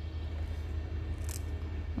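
Steady low background hum, with a faint short rustle a little over a second in.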